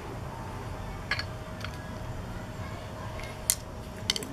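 A few short, sharp metallic clicks of hand tools and the puller's parts being handled, the loudest about three and a half seconds in, over a steady low outdoor background.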